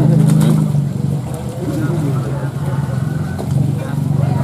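A motor engine running steadily, its low drone loudest in the first second, with people talking over it.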